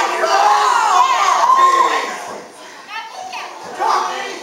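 High-pitched voices shouting and calling out around a wrestling ring. They drop away about two seconds in and pick up again near the end.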